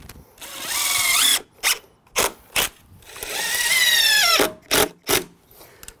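A cordless impact driver drives two screws into wooden deck skirt boards. Each drive is a run of the motor under load, a rising whine on the first, followed by a few short bursts as the screw is set flush with the wood.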